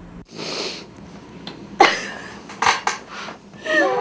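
A woman crying: breathy sobs and gasps, a few sharp clicks of movement around the middle, and a wavering, pitched crying wail near the end.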